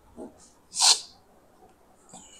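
A person's single short, sharp breath out through the nose, a snort-like huff about a second in, preceded by a fainter low sound.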